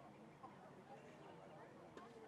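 Faint distant voices over a low open-air background hiss, with no clear event.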